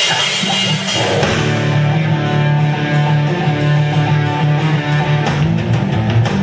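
Live rock band kicking into a song: distorted electric guitar chords over bass, opening with a cymbal crash, then a steady drum-kit beat from about two seconds in.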